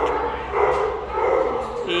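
Several shelter dogs barking and yipping without a break in the kennel runs.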